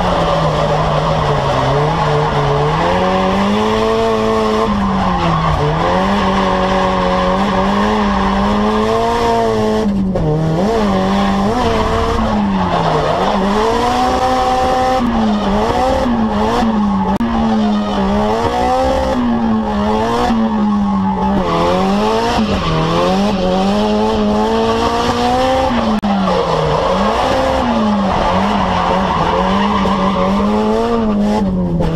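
Drift car's engine held at high revs in first gear, the revs rising and dipping every second or two as the driver works the throttle through a slide, heard from inside the cabin over the noise of the tyres skidding.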